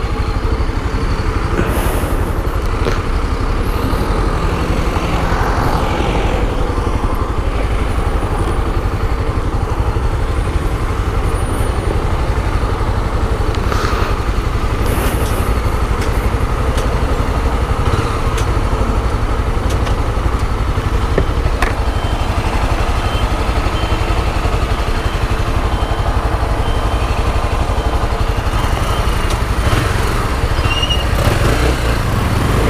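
Honda CB 300's single-cylinder four-stroke engine running steadily, idling for most of the time with no revving.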